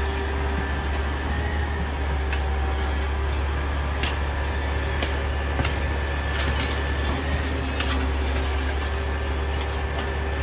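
Fire engine pump running steadily with water hissing from the hoses, loud and unbroken, with a few short knocks.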